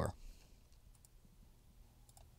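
Near silence: quiet room tone with one or two faint computer mouse clicks as on-screen windows are closed.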